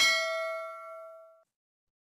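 A single bell 'ding' sound effect, struck once and ringing with several tones that fade out over about a second and a half. It is the notification-bell chime of a subscribe-button animation.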